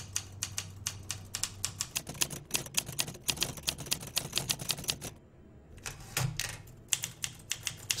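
Manual typewriter keys struck in rapid, irregular runs of sharp clicks, with a brief pause a little past halfway before the typing resumes.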